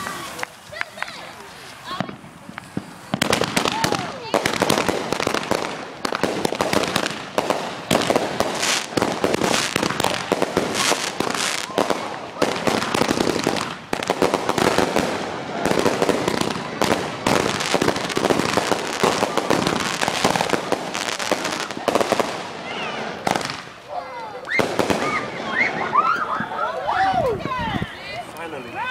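Consumer fireworks going off: a dense, rapid string of crackling pops and bangs that starts about three seconds in and runs for some twenty seconds, then thins out near the end.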